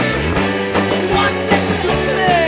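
Punk rock band playing an instrumental passage from a studio recording, with electric guitar, bass and drum hits and no vocals.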